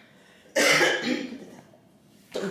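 A woman coughing once, a sudden loud burst about half a second in that fades over about a second.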